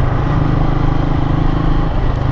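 Motorcycle engine running steadily while riding along at an even speed, heard from the rider's seat, with an unchanging pitch.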